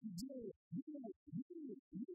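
A young man's voice reciting spoken-word poetry, in fast, broken phrases. It sounds muffled, with only its low range coming through.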